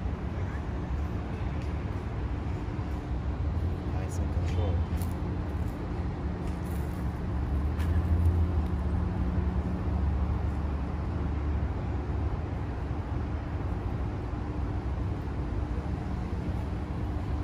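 Steady low rumble of city street traffic with a constant hum running beneath it.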